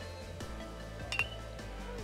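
An aluminum baseball bat hitting a pitched ball: a single short, sharp ping about a second in, over faint background music.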